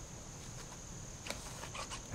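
Faint steady high-pitched drone of insects, with a few faint clicks in the second half.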